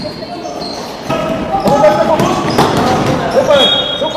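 Live basketball game sound in an echoing sports hall: the ball bouncing on the hardwood floor among players' calls and shouts, getting louder about a second in.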